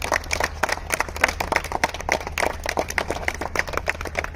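A small group of people clapping, many quick, irregular, overlapping hand claps.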